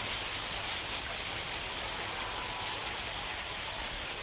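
Swimmers splashing through the water during a race, a steady, even wash of splashing.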